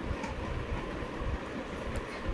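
Steady low rumble with hiss: background noise with no clear event in it.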